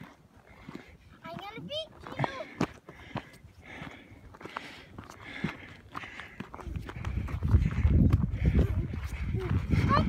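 Footsteps crunching on snow-covered rocky ground, about two steps a second, with a brief high-pitched voice about a second and a half in. From about seven seconds in a loud low rumble of wind on the microphone joins in.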